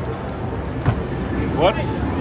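A thrown ball knocks once against the block-knocking carnival game a little before a second in, over a steady arcade din.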